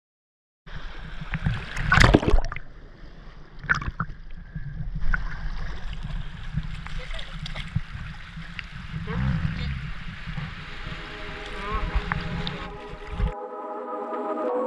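Shallow seawater sloshing and splashing around a diver sitting in the surf in a wetsuit, over a low rumble on the microphone, with a couple of sharper splashes or knocks about two and four seconds in. Music with a pitched tune comes in near the end as the water sound cuts off.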